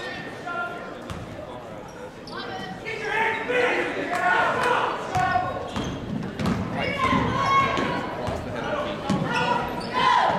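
Basketball being dribbled on a hardwood gym floor, short bounces ringing in the large hall, with spectators' voices throughout that grow louder after a few seconds.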